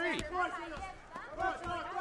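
Mostly voices: men talking and calling out over the fight, with a brief lull about a second in.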